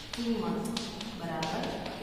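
Chalk tapping and scratching on a chalkboard as words and numbers are written, with a few sharp taps, under a woman's speaking voice.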